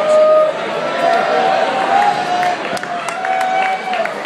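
Concert crowd talking and calling out over one another, with a few held shouts and a few sharp clicks about three seconds in.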